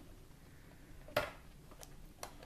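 A single sharp click a little over a second in, with a fainter tick near the end, as the airsoft rifle is handled; otherwise quiet room tone.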